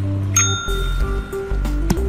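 A tabletop service bell pressed by a cat, struck once about a third of a second in, its clear ring lasting more than a second over background music.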